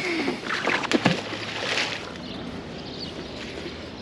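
A fishing magnet cast out on its rope, splashing into the river about a second and a half in.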